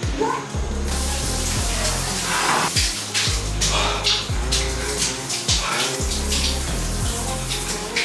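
Shower spray running, its hiss starting about a second in, over background music with deep bass notes that slide downward.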